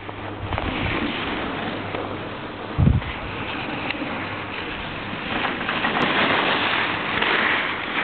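Steady rush of wind on the microphone while riding a chairlift, with a brief low thump about three seconds in.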